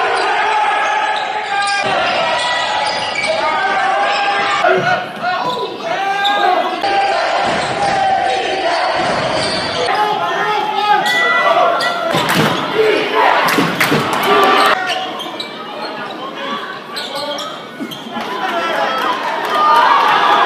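Basketball game sound in a gym: the ball bouncing on the hardwood, sneakers squeaking, and crowd and player voices.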